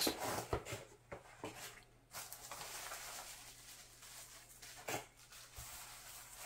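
Quiet handling of packaging as a small cardboard box is opened: light clicks of cardboard flaps, then soft rustling of bubble wrap and cardboard, with one sharper tap about five seconds in.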